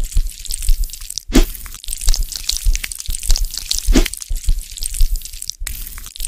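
Added ASMR sound effect for a cartoon knife cutting away skin growths: a dense run of quick, irregular clicks and crackles with soft low thumps underneath, a couple of strokes standing out louder.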